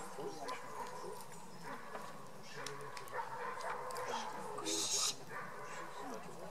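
A Beauceron making soft whines and yips. There is a brief rustle just before the end.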